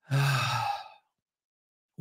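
A woman's weary sigh into a close microphone, breathy with a low voiced tone underneath, lasting about a second.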